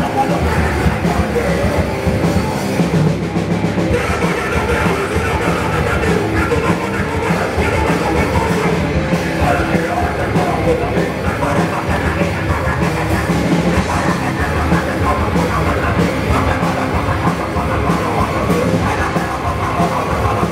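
Hardcore punk band playing live at a loud, steady level: electric guitar and drum kit, dense and without a break.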